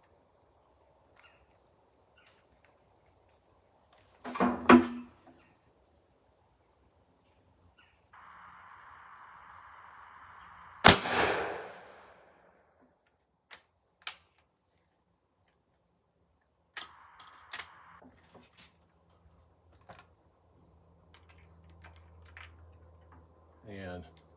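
A single .38 Special shot from a Rossi R92 20-inch lever-action carbine about eleven seconds in, sharp and loud with a trailing echo. A loud mechanical clack comes about four seconds in, and a few light clicks of handling follow the shot.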